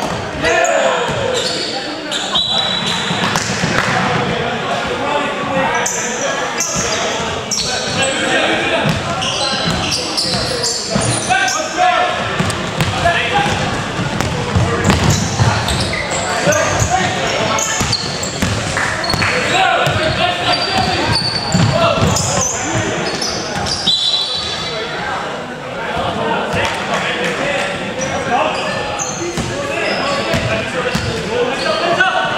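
Basketball game in a large gym hall: the ball bouncing on the wooden court amid players' voices calling out, with the echo of the big hall.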